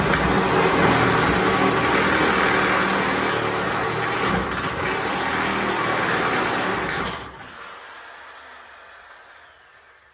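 An electric motor runs steadily, then cuts off about seven seconds in and winds down, fading out over the next few seconds.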